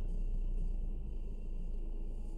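Steady low rumble of a car's engine and tyres heard inside the cabin through a dashcam microphone as the car rolls slowly in traffic, with a faint steady hum.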